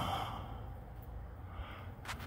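A person sighing close to the microphone, the breath fading out within the first half-second, then a low steady background.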